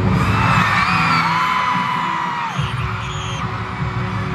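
Live pop concert music over arena speakers: a deep throbbing bass pulse, with a few high, drawn-out tones gliding above it.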